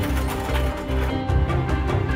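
Tense dramatic background music: held notes over a pulsing low beat.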